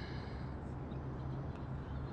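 Steady low outdoor background hum and rumble, with a faint hiss in the first half second.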